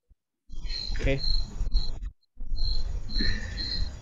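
A cricket chirping in short, evenly repeated pulses, about three a second, heard through a video-call microphone over a low background rumble. The sound cuts out briefly twice, near the start and about two seconds in.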